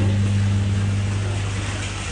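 Steady low electric hum over a wash of circulating-water noise, typical of an aquarium water pump or filter running.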